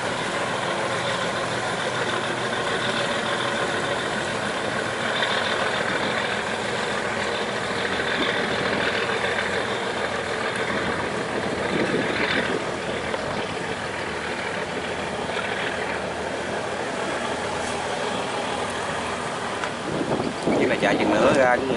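Diesel engines of a passing loaded container barge running steadily, over the rush of water along its hull.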